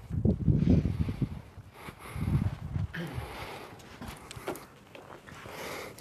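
Rustling of clothing and a plastic disposable gown, with shuffling movement and a few light knocks, as a person climbs onto a padded treatment bench and settles into position. The low rustling is loudest in the first second and again around two seconds in.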